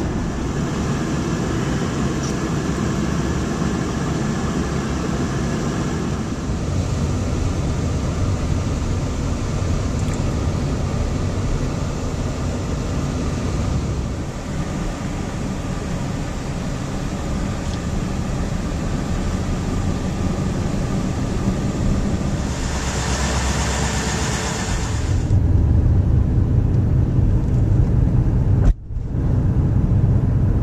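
Road and engine noise inside a moving car: a steady low rumble with tyre hiss. A louder hiss swells for a few seconds past the middle. Near the end the sound drops out briefly, then a heavier low rumble follows.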